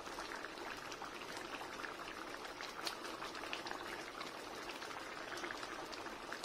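Taro root curry bubbling at a boil in a steel pan: a steady crackle of many small bursting bubbles.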